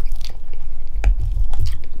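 Close-up chewing of a mouthful of mashed potato with gravy and sausage, with a few short clicks.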